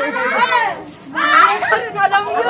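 Excited high-pitched voices of girls and children talking and calling out over one another, with a brief lull about a second in.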